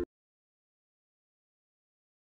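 Background music cuts off abruptly at the very start, followed by dead silence with no sound at all.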